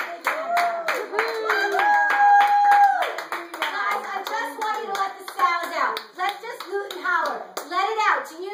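Hands clapping a steady rhythm, about three claps a second, over a woman's wordless singing, with one long held note about two seconds in.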